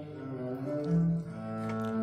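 Background music: slow, low held notes that change pitch every half second or so.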